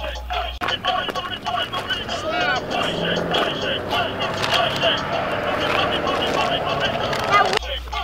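Animated plush dinosaur toy playing its song, with singing, while it dances and shakes its hips.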